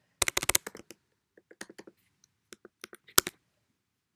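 Typing on a computer keyboard: a quick run of key clicks at the start, then scattered keystrokes, with one louder key strike about three seconds in.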